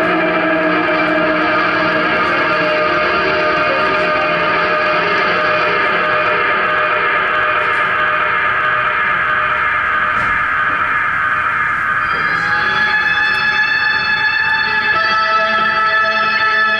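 Electric guitar played through effects in an ambient electronic piece: a dense wash of sustained, layered tones. About twelve seconds in, a new set of higher held notes comes in over the texture.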